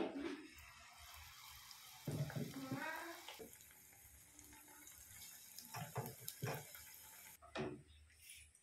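Batter-coated banana flower florets sizzling as they deep-fry in hot oil in a pan, the sizzle starting as they drop in and cutting off abruptly near the end. A brief voice sounds about two seconds in.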